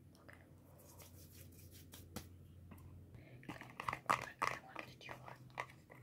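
Plastic makeup packaging being handled: a cluster of small clicks and crackles from about three and a half to five and a half seconds in.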